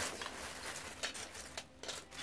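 Loose plastic Lego pieces clattering as hands stir through a bulk pile: a steady run of irregular small clicks and rattles.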